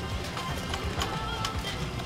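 Background music with a light, clicking percussion beat over a low bass.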